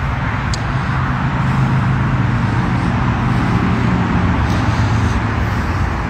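Street traffic noise: a steady rushing haze under a low vehicle engine hum that fades about five seconds in, picked up by a phone's microphone.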